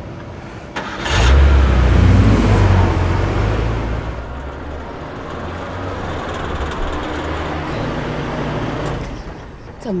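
Car engine revving up sharply about a second in as a Cadillac coupe pulls away and accelerates, then running more steadily as it drives on.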